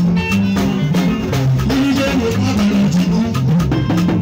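Live band music: a steady, fast drum and percussion beat over a bass line that steps between sustained low notes.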